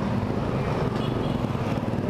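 Yamaha Aerox scooter riding through traffic: a steady rush of wind and road noise, heaviest in the low end, with the engine running underneath.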